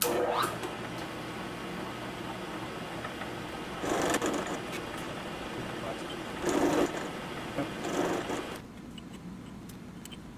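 Vertical milling machine running with a 3/8-inch end mill taking a light side cut to widen a slot, the cutting growing louder three times, at about four, six and a half and eight seconds in. The machine noise falls away about a second and a half before the end.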